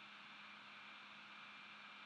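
Near silence: a faint, steady background hiss of room tone.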